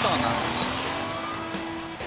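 A motorcycle engine running in heavy rain, with background music underneath.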